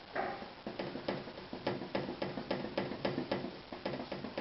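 Oil-painting brush tapping repeatedly, about four short taps a second, starting under a second in after a brief scrape.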